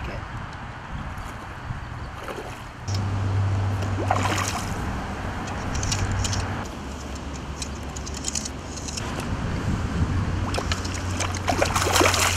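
A hooked trout splashing and thrashing at the water's surface as it is played on a fly rod, with splashes about four seconds in and again near the end. A steady low hum runs underneath from about three seconds in.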